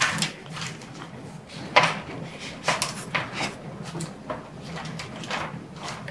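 A sheet of stiff plastic lighting gel being handled and cut: a string of irregular crinkles, rustles and scrapes, over a low steady hum.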